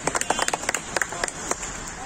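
A group of people clapping by hand outdoors, the claps thinning out and stopping about a second and a half in.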